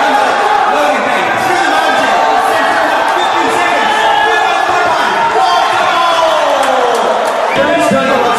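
Shouting voices and crowd noise in a large hall, loud throughout, with a long falling cry starting about five seconds in and stopping half a second before the end.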